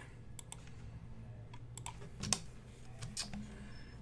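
Faint, scattered clicks of a computer keyboard and mouse, a few keystrokes and clicks spread across the seconds.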